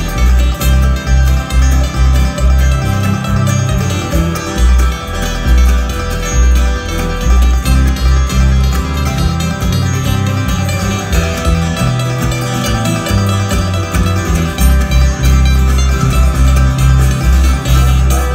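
Live bluegrass band playing acoustic string instruments, with guitars and upright bass, the bass notes walking prominently underneath.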